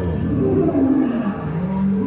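Recorded dinosaur roar from an exhibit's loudspeakers: a loud, low growl that slides down in pitch and then holds.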